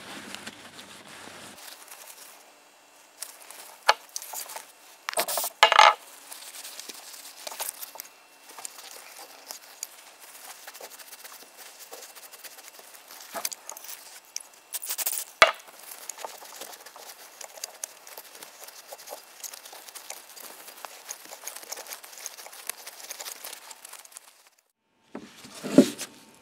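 Cloth rag rubbing and scrubbing inside a car's throttle body to work off a thick layer of dirty deposits, with small knocks and clicks as the part is handled. A few short louder bursts stand out, one about halfway through a brief hiss of alcohol-based cleaner spray.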